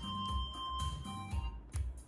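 Instrumental music playing quietly through a pair of JBL G2000 Limited loudspeakers, with a soft bass beat about twice a second.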